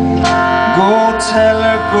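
Live jazz band playing an instrumental passage of a slow ballad: trumpet and clarinet hold long notes with vibrato over bass and drums, with a cymbal hit just after the start. A male singer comes in with "Oh" at the very end.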